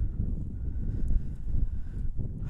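Wind buffeting the camera microphone, a low, uneven rumble.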